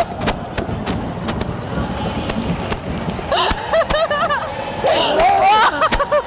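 Team of Percheron draft horses pulling a wagon, their hooves making a scattered patter of knocks on the arena floor. Excited, wordless vocal exclamations come about halfway through and again near the end.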